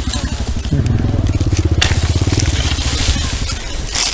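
A nearby engine running steadily with a low chugging. From about two seconds in, a crunching rustle of dry straw and soil joins it.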